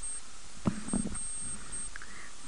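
Steady background hiss of an old recording, with a couple of faint brief clicks about two-thirds of a second and one second in.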